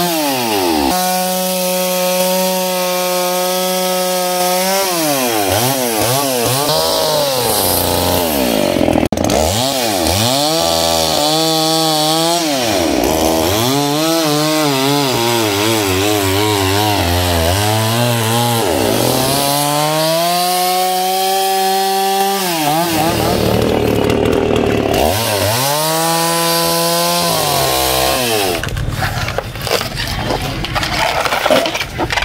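Chainsaw cutting into the crown of a felled coconut palm. The engine speed rises and falls again and again as the chain bites into the fibrous stem and eases off, with a few steadier stretches at full speed.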